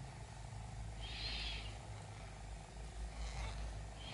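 Faint, soft rustle of chunky yarn being worked with a crochet hook, loudest about a second in, over a low steady hum.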